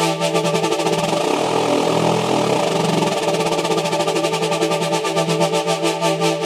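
VPS Avenger software synthesizer playing a pad preset: a sustained chord over a steady low note, with a very fast, even pulsing shimmer in the upper register.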